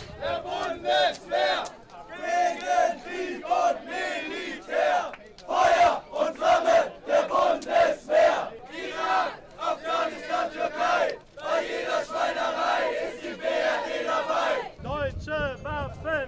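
Crowd of protesters shouting slogans together in short, rhythmic chanted bursts of many raised voices.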